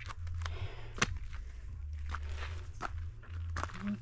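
Footsteps on a dirt and stone mountain trail, an uneven step about every half second, with one louder footfall about a second in. A low rumble comes and goes underneath.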